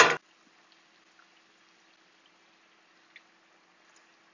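A brief loud noisy burst right at the start, then near silence: faint room tone with a low steady hum, a faint hiss and a few tiny ticks.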